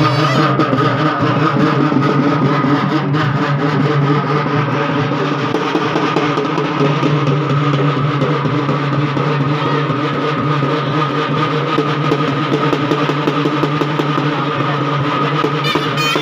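Loud live procession band music: rapid drumming under a steady, droning wind instrument holding long notes.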